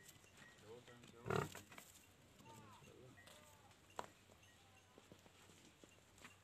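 Faint calls of farm animals, with one short, louder rush of noise about a second and a half in and a single sharp click about four seconds in.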